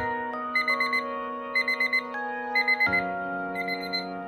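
Round digital timer beeping at zero in bursts of four quick high beeps, about one burst a second, signalling the end of the five-minute break, with soft background music underneath.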